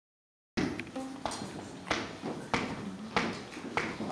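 Sharp knocks in a steady even beat, about three every two seconds, beginning abruptly half a second in, as a tempo is kept by stomping or clapping.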